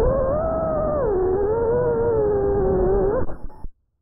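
Small FPV drone's motors whining, the pitch rising and falling with the throttle. The whine cuts off abruptly about three and a half seconds in as the drone comes down in the grass.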